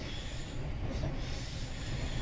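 Class 317 electric multiple unit in motion, heard from inside the carriage: a steady low rumble of the running gear, with a high-pitched wheel squeal that comes and goes.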